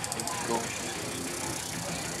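A man counting aloud ("dos") during a knee-strike drill on a padded bag, with a knee strike landing on the pad about half a second in. A fast, high-pitched pulsing runs in the background and stops shortly after the start.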